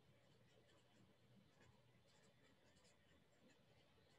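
Near silence, with faint scratching strokes of a felt-tip marker writing on paper.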